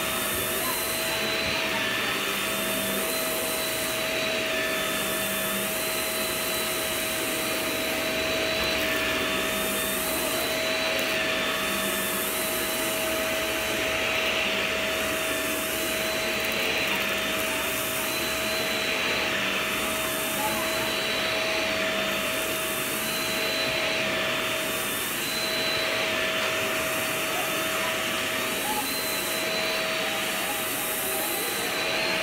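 Vacuum cleaner running steadily over a rug, a constant motor hum with a high whine on top. The whine steps slightly up and down every second or two as the head is pushed and pulled across the pile.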